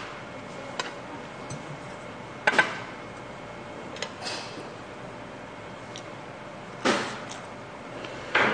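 Metal spoon and chopsticks clicking and knocking against a stainless steel bowl and small side dishes during eating: a handful of short clinks, the loudest a double one about two and a half seconds in and another just before seven seconds, over a steady low hiss.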